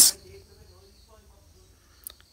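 A man's voice trailing off at the start, then a quiet stretch of faint room noise with no clear sound event.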